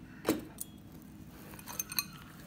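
A glass bowl clinking as a hand kneads raw peanuts into a spiced gram-flour coating, with the jingle of the cook's bangles: one sharp clink with a short ring about a quarter second in, a lighter one soon after, and a few small clinks near the end.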